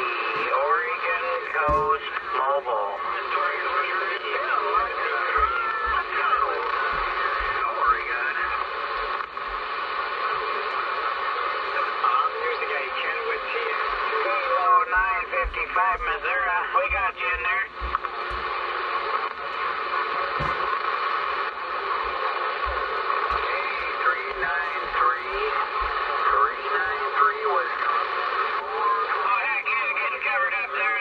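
Single-sideband voices coming in on a Uniden Bearcat 980SSB CB radio tuned to channel 38 LSB (27.385 MHz). Several distant stations are talking over one another through band noise, and their garbled speech runs on without a break.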